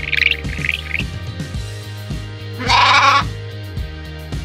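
A sheep bleat played back from Google Search's animal sounds panel: one loud, wavering bleat under a second long about two-thirds of the way in. A few short high chirps sound in the first second, and background music with a steady beat runs underneath.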